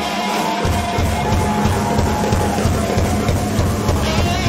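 Live rock band playing loud: electric guitar, bass guitar and drum kit through stage amplifiers. The low end drops out for about half a second at the start, then the full band comes back in.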